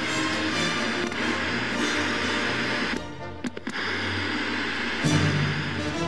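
Dramatic orchestral theme music from a TV talk show's opening titles. About halfway it drops briefly with a few sharp clicks, and a loud low hit comes about five seconds in.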